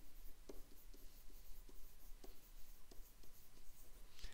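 Stylus writing on a tablet screen: faint, irregular scratching strokes and light taps as words are handwritten.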